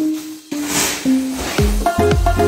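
Background electronic music: held synth notes and a swelling hiss, with a deep bass line coming in near the end.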